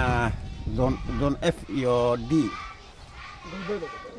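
A man speaking Somali into a handheld microphone, in short phrases with pauses, quieter toward the end.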